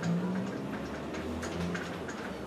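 Light, irregular ticks and taps of a writing implement as a formula is written out, over a low steady hum.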